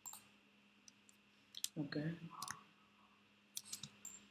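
A handful of sharp, faint clicks from a computer mouse and keyboard, bunched together near the end. A brief murmur of a man's voice comes about two seconds in.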